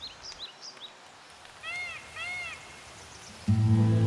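Small birds chirping faintly over quiet outdoor ambience, with two short rising-and-falling calls around two seconds in. About three and a half seconds in, background music with sustained low chords comes in abruptly and is the loudest sound.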